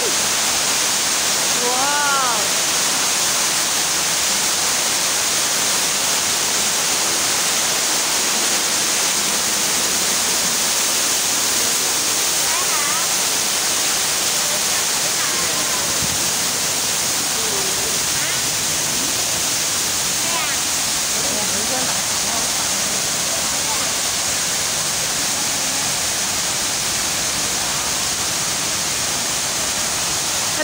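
Man-made waterfall pouring over artificial rock into a pool: a loud, steady rush of falling water, with faint passing voices now and then.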